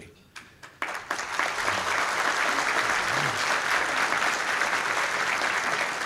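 Audience applause that starts suddenly just under a second in, after a short quiet, and then holds at a steady level.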